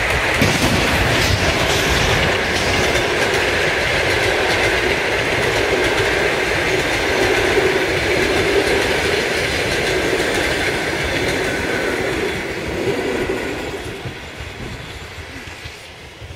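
Passenger train running past close by, its wheels clattering over the rails in a loud, steady rush that fades away over the last few seconds.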